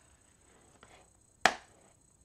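A clear plastic stamp-set case being closed and laid down on a hard tabletop: one sharp plastic click about a second and a half in, with only faint handling noise around it.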